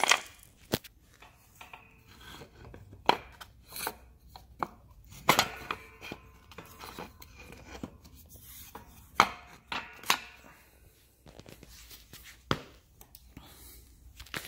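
Wooden spacer blocks and a PVC pipe spacer being fitted by hand onto the steel bars of a dolly foot brake: irregular sharp knocks and clacks, about eight, with rubbing and handling noise between them.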